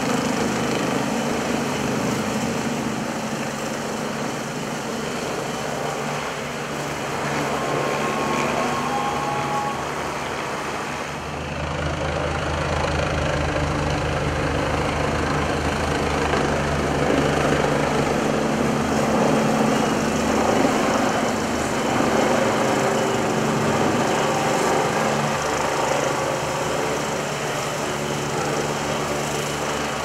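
Helicopter hovering low overhead, its rotor and engine running steadily.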